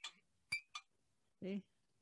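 Ceramic coffee mugs clinking against each other: a few light, short clinks in the first second.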